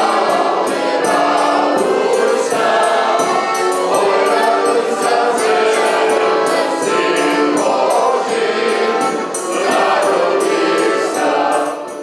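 A small mixed folk ensemble singing together in chorus, with a button accordion and a large frame drum topped with a cymbal keeping a steady beat.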